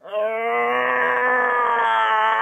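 A man's long, drawn-out straining groan, held at a steady pitch for about three and a half seconds, as he pulls a wrench to tighten a stiff brake-line fitting on a master cylinder.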